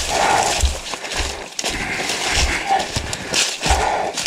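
Footsteps crunching and rustling through deep dry leaf litter, with several dull thuds of feet landing.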